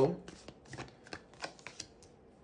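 Tarot cards being shuffled in the hands: a soft run of quick, uneven card flicks and slides.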